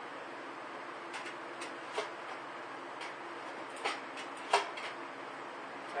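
Steel cans clinking and knocking against one another as they are fitted together: a scattering of sharp metallic taps, the loudest about four and a half seconds in, over a steady faint hum.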